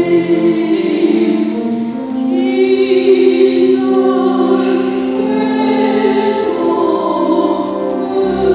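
Choir singing a hymn in slow, sustained notes, the pitch moving from note to note every second or two.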